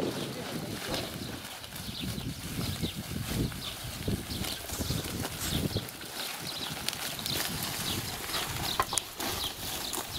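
Dry strips of peeled tree bark rustling and crackling irregularly as they are gathered up by hand and tossed onto a cart, with feet crunching over the bark litter.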